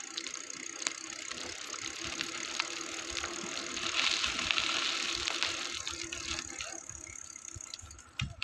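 Bicycle on the move, its freewheel ticking rapidly while coasting over the sound of tyre and wind noise. A louder hiss swells about halfway through.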